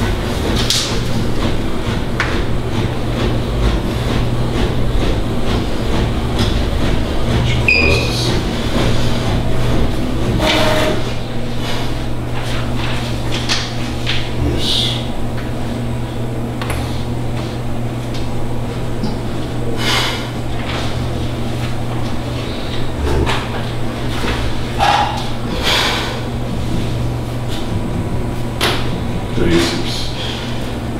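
Indistinct voices over a steady low hum, with a few short clicks and knocks scattered through.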